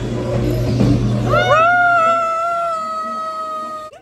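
A long high-pitched scream, rising quickly and then held for over two seconds, sagging slightly in pitch before it cuts off suddenly near the end. Before it, a loud noisy din with a low hum.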